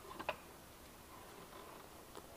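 A few faint, sharp clicks about a quarter second in, the last the loudest, over a low, even background.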